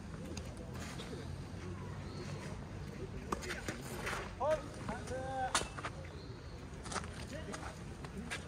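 Quiet outdoor tennis-court ambience: a steady low rumble, brief distant voices calling midway, and a few sharp pops of tennis balls being hit or bounced.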